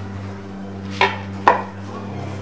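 A china bowl lid knocking twice against a wooden table as it is set down, the second knock louder, about half a second after the first.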